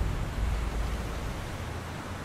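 A low rumbling noise with no clear tones, fading away gradually.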